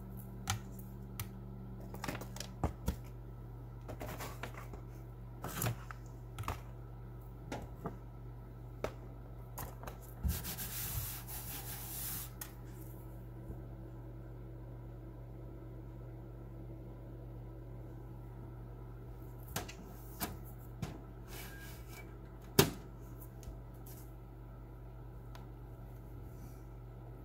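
Hands threading twine through a cardboard board and tying it, heard as scattered light taps and rustles. A scratchy rustle lasts about two seconds around ten seconds in, and a single sharp knock comes a few seconds before the end, all over a steady low hum.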